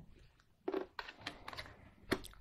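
Tarot cards being turned over and laid down on a wooden table: a handful of light taps and clicks, starting a little after the first half-second.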